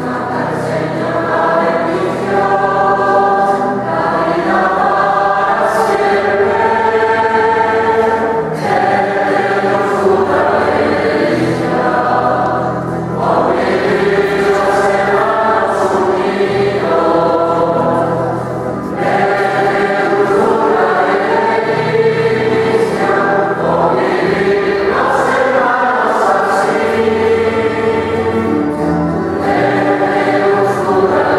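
A choir singing a church hymn in long, held phrases of about four to five seconds, with brief breaks between them.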